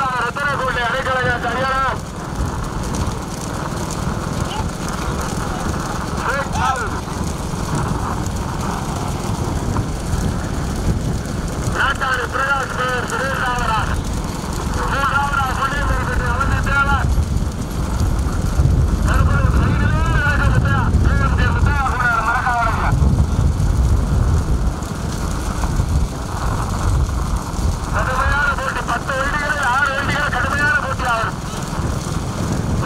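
Bullock cart race passing close: a steady low rumble of engine and wind noise, with bursts of shouting voices every few seconds.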